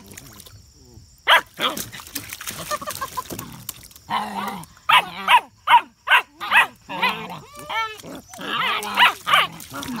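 German Shepherd puppies barking and yapping in short bursts as they squabble over a kiddie pool, with a quick run of calls in the middle and a falling whine-like call near the end. A person laughs about halfway through.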